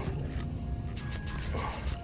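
Penn spinning reel being cranked to reel in a hooked fish, its gears clicking, over background music.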